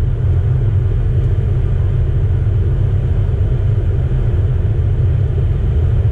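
Pickup truck cruising in fifth gear at about 50 mph, heard from inside the cab: a steady low engine and road rumble.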